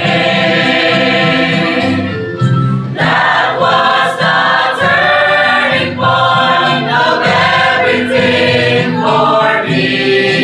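Mixed choir of men and women singing a gospel hymn together, in phrases with short breaks between them.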